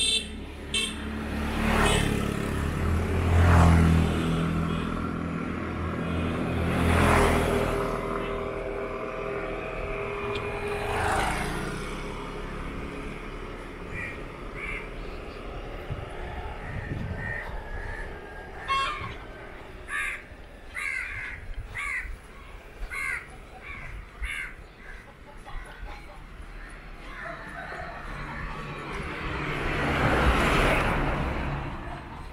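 Motorbikes passing one after another along a road, each engine swelling and fading. Then a bird calls over and over in short chirps, about one a second, and another vehicle comes up near the end.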